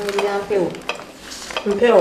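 Kitchen knife chopping tomatoes on a wooden cutting board: a few sharp knocks of the blade striking the board. Over it a person's voice holds a sung note at the start and slides between notes near the end.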